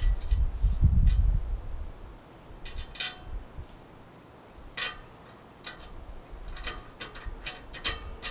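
Scattered small metallic clicks and clinks as a stainless-steel tie-down eye is threaded down onto a bolt in an aluminium roof rack rail. A low rumble fills the first second and a half.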